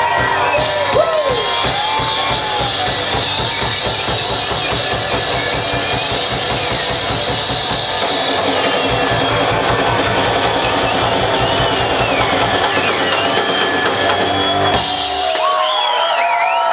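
Live rockabilly band playing the close of a song, the drum kit pounding out a fast driving beat; the drums drop out suddenly about a second before the end.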